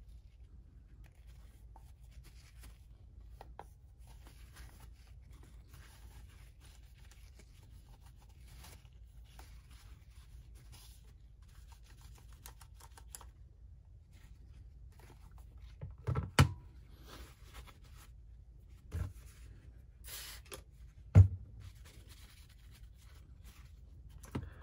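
Paper towel rubbing and crinkling against the plastic case and display window of a vintage Panasonic calculator, faint and uneven. Three sharp handling knocks come in the second half, the loudest a few seconds before the end.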